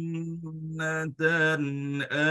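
A man chanting Qur'an recitation in a melodic style: one long held note, a brief break just after a second in, then a new phrase with ornamented, wavering pitch.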